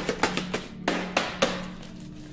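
A small wrapped gift box being shaken by hand, its contents knocking against the sides in about six sharp knocks, with a bell-like ringing from inside.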